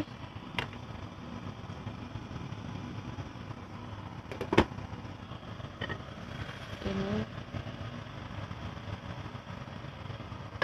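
Steady low rumble over the stove, with one sharp metallic clink of a stainless pot lid about halfway through and a couple of lighter clinks.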